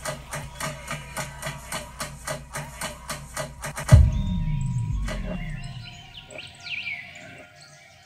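Electronic music track: a fast, even beat of about four hits a second stops about four seconds in on a loud deep boom whose low tone falls and fades over a couple of seconds, followed by a few quieter high chirps.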